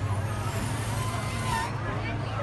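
Steady low engine hum of an idling vehicle under crowd chatter, with a faint high hiss that stops near the end.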